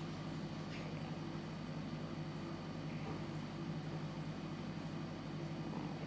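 Quiet room tone with a steady low hum. Over it come a few faint, brief scratches of a fine-tip pen drawing short lines on a paper tile.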